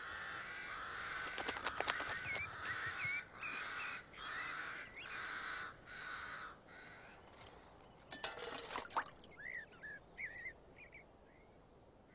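Ravens calling: a run of harsh calls about one a second, with a few sharp clicks among them. Near the end comes a brief clatter, then some short, higher chirping calls.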